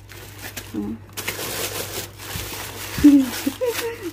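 Plastic bag and paper wrapping rustling and crinkling as a parcel is unwrapped by hand. A woman's voice sounds briefly, once about a second in and again near the end.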